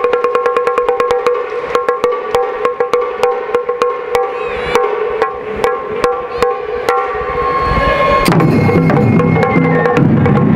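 Japanese taiko ensemble playing: quick sharp strikes, about five a second, from sticks and chappa hand cymbals over a steady held high note. About eight seconds in it turns louder and fuller, with deeper drum tones.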